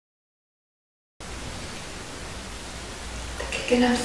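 Dead silence, then about a second in a steady hiss with a low hum cuts in suddenly: the background noise of a recording starting. Near the end a voice begins speaking.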